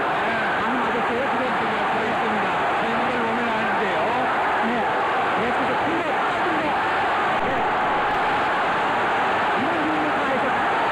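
Large arena crowd at a boxing match shouting and cheering, many voices overlapping in a steady din that does not let up.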